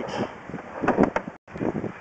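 A few short knocks and rattles from a drain-inspection camera's push rod as it is drawn back through the pipe, clustered around the middle.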